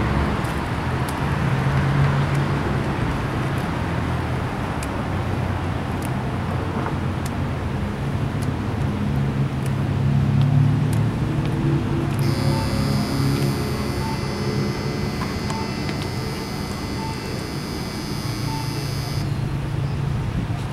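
Downtown street traffic: vehicle engines running with a steady low hum. From a little past the middle until shortly before the end, a steady high-pitched whine with faint, evenly spaced pips sits over the traffic.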